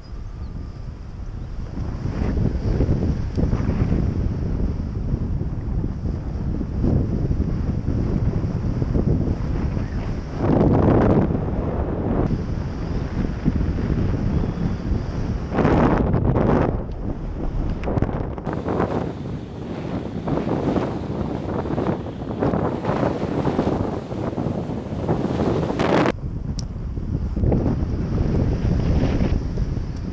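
Wind rushing over the camera microphone of a paraglider in flight, gusting, with louder surges about eleven and sixteen seconds in.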